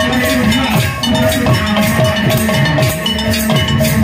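Live kirtan music: a khol barrel drum is played in a fast, steady rhythm, its bass strokes bending in pitch, over steadily ringing metal percussion.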